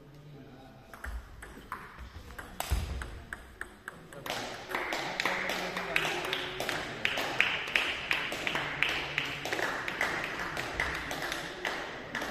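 Table tennis ball clicking sharply off bats and table, a few separate hits at first, then a much denser, louder run of rapid clicks from about four seconds in, with voices in the hall.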